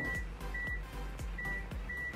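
Haier front-load washing machine's control panel beeping as its buttons are pressed to step through the cycle time and speed settings. It gives short, high single-tone beeps, about four at uneven gaps.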